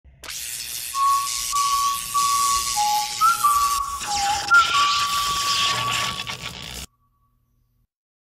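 Electronic intro sting: a few held, whistle-like notes stepping up and down over a loud hissing, crackling noise. It cuts off suddenly about seven seconds in.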